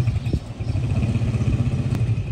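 The engine of a three-wheeled motor tricycle running as it drives along, a steady fast-pulsing rumble. The engine note dips briefly with a click about a third of a second in.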